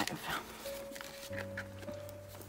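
Paper banknotes being handled, with light rustles and ticks as they are squared up and tucked toward a plastic binder pocket. Under them are held steady notes that start about half a second in, with a lower note joining a little later.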